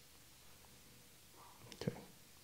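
Quiet room tone, then a man saying a soft "okay" near the end.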